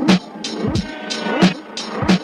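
Hip-hop beat played live on the pads of an Akai MPC 2500 sampler: punchy kick and snare hits with hi-hats, two to three a second. A pitched sampled sound bends between the hits.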